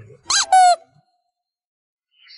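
A Bengal cat meowing: a quick rising chirp and then a longer, slightly falling meow, both within the first second.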